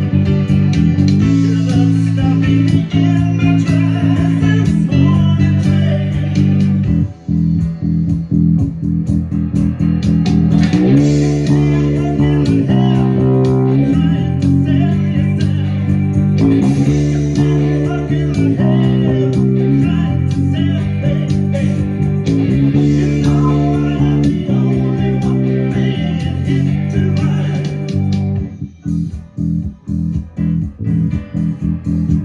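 Modified Gibson EB-4L electric bass with a split mudbucker pickup, played fingerstyle in a moving, steady line along with a rock band recording. The music turns choppy with short gaps near the end.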